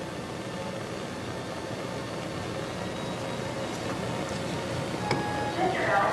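Steady low hiss and hum, growing slightly louder, with a man's voice starting near the end.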